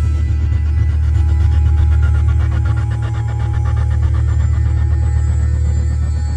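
Background music with a deep, steady drone.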